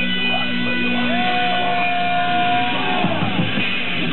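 Punk rock band playing live, with electric guitar, through a low-quality recording. A long held note rings from about a second in and slides down in pitch near the end.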